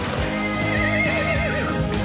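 A rearing horse whinnying: one wavering call of about a second and a half, over background music.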